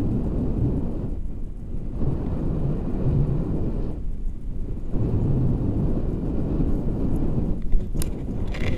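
Wind buffeting the camera microphone during a tandem paraglider flight, a gusty low rumble that swells and eases every second or so.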